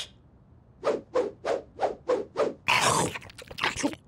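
Cartoon sound effect: a run of short rasping squeezes, about three a second, starting about a second in, with a longer, hissier one about three seconds in.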